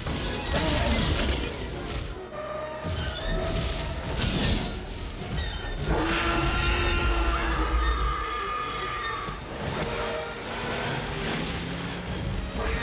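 Dramatic orchestral film score with long held notes, mixed with heavy crashes and deep rumbling as a Tyrannosaurus rex smashes through a fallen tree chasing a jeep.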